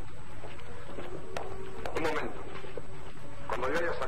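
Film dialogue: a few short spoken words over the steady hum and hiss of an old film soundtrack, with a faint held note of background music beneath them.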